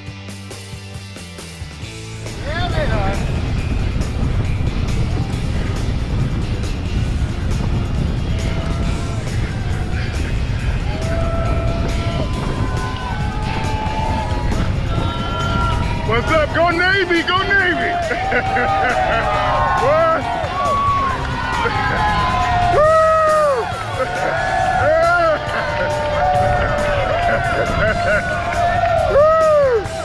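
Wind rushing over the microphone of a camera mounted on a moving bicycle, a steady low rumble that starts about two seconds in as music ends. From about ten seconds in, roadside spectators cheer and whoop again and again.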